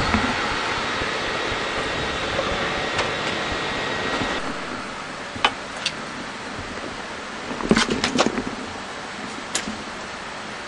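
Steady hiss and hum of the International Space Station's cabin ventilation fans and equipment, with a faint high whine that cuts out a little before halfway. After that come a few scattered light clicks and knocks, with a quick cluster of them a little past the middle.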